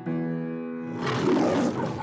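A held keyboard chord rings out, then about a second in a lion roars, a long, rough roar in the style of the MGM logo.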